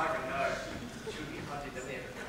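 Faint male speech, quiet and indistinct.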